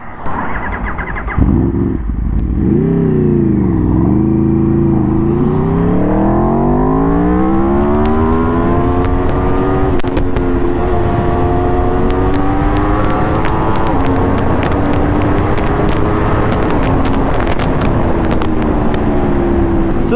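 Aprilia RSV4 RR's V4 engine pulling hard from a standstill, the revs climbing in a long rising whine. It then holds a near-steady pitch at highway speed with small steps as it shifts and eases off, under constant wind noise.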